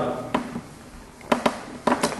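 Four short, sharp clicks in a pause between speech: one soon after the start and three close together in the second half.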